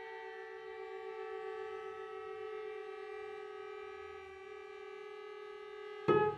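String quintet of two violins, viola and two cellos holding a long, steady chord of sustained bowed notes, swelling slightly and then easing.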